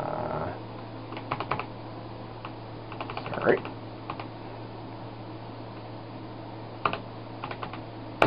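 Typing on an Apple IIe keyboard: a few short runs of key clicks with pauses between them, as login details are entered, over a steady low electrical hum.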